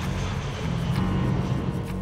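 Jet airliner's engines running as it lands on the runway, a steady noise, with background music underneath.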